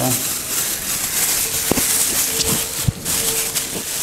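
Clear polythene bag crinkling and rustling as a pair of slippers is pushed into it, with two sharp clicks a little over a second apart near the middle.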